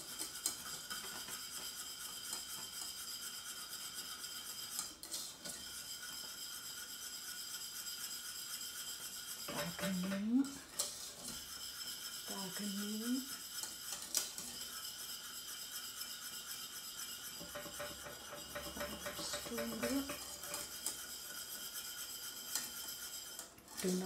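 Wire whisk scraping and clinking steadily against the inside of a stainless steel saucepan as it stirs bubbling caramel sauce.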